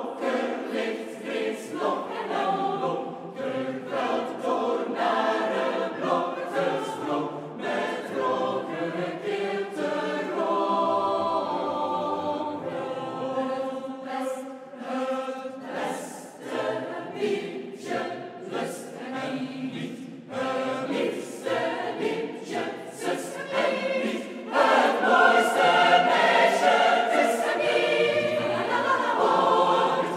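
Large mixed choir singing a Flemish folk song, with a louder passage starting about five seconds before the end.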